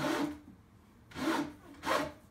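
Thick elastic cord being pulled through holes drilled in a wooden cabinet frame, rubbing against the wood as it is drawn through in three strokes: at the start, just after one second, and near the end.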